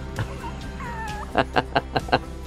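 A toddler's brief high-pitched squeal, wavering in pitch, followed by a quick burst of laughter of about five short pulses, over soft background music.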